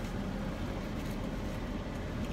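Steady low rumble of a car idling, heard from inside the cabin.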